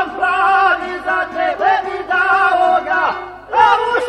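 Male voices singing loudly together in traditional Bosnian izvorna folk style, holding long wavering notes. The phrase breaks off briefly a little after three seconds in, and a new one starts just before the end.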